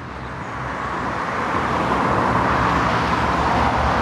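A car passing on the street, its tyre and engine noise a steady hiss that grows louder over several seconds as it approaches.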